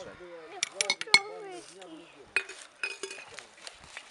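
Sharp metal and glass clinks from a ladle and glass jar at a cooking pot: a quick run of them about half a second to a second in, the loudest near one second, and a few more between two and three seconds in. A voice talks under them through the first half.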